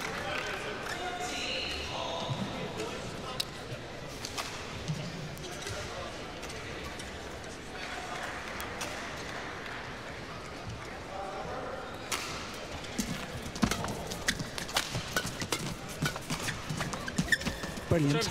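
Badminton rally in an indoor arena: after a stretch of crowd murmur with scattered voices, sharp racket strikes on the shuttlecock and players' shoes squeaking and thudding on the court begin about two-thirds of the way in and come thick and fast near the end.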